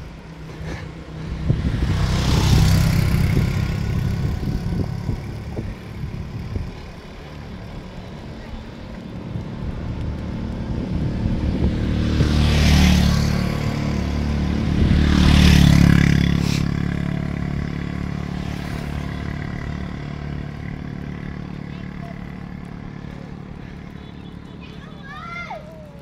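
Wind buffeting a phone's microphone while riding a bicycle along a road: a steady low rumble that swells loudly about two seconds in, and again around twelve and fifteen seconds in.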